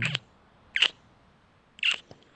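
A man's low hum trailing off, then two short breathy puffs from his mouth, about a second apart.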